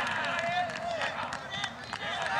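Several men shouting and calling over one another on a rugby pitch during open play, with scattered short knocks and clicks.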